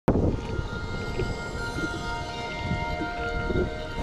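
Self-balancing scooter (hoverboard) rolling along a concrete sidewalk: a low rumble from the wheels with small knocks, under a steady whine of several held tones from its hub motors.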